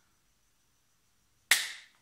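Near silence, then about one and a half seconds in, a single sharp smack of a hand, like a clap or slap, fading quickly in the room.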